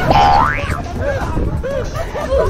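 A cartoon 'boing'-style sound effect: a whistle-like tone that glides up and drops back in about half a second near the start, over people's voices.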